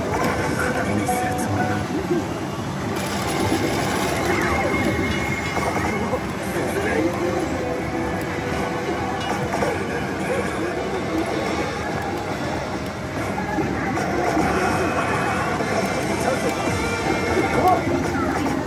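Kabaneri pachislot machine's game audio: character voice lines and music over dense, steady noise as the machine runs its lead-up stage into the Ikoma chance zone.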